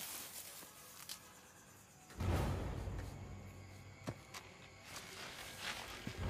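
Film soundtrack: quiet for the first two seconds, then a low, sustained swell of score enters about two seconds in. A few faint, sharp clicks are scattered through it.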